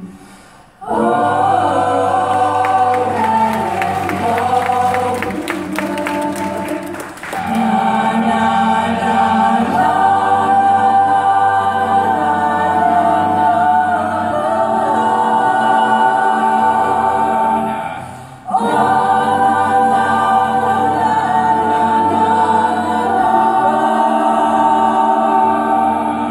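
High school jazz choir singing an a cappella arrangement in sustained multi-part harmony. The voices cut off together briefly just before a second in and again about three-quarters of the way through, each time coming back in together.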